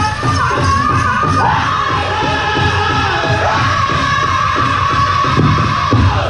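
Powwow drum group singing a chicken dance song: several men's voices in high unison over steady strokes on a large shared drum. The singing slides down near the end.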